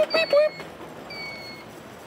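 Electronic siren sounding in its repeating cycle: a quick run of short chirps, about six a second, then a single held high beep about a second in.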